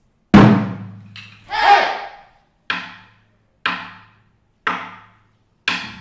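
A drum ensemble on barrel drums: one loud unison stroke that rings on, a shout from the group, then four single strokes about a second apart as the piece opens.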